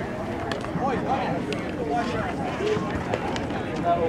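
Indistinct chatter of players and spectators around the field, several voices overlapping with no clear words, and a few light clicks.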